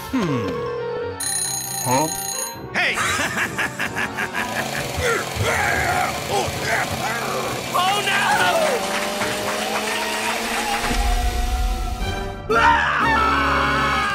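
Edited sound-effects track over music: a steady beep, a brief high ringing, then a busy run of clicks, squeaky rising and falling pitch glides and a long slowly rising tone, with a short break near the end.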